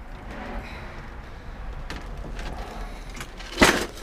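Rummaging among cables and old electronics on a cluttered shelf: rustling and handling noise, with one sharp clack of objects knocking together about three and a half seconds in.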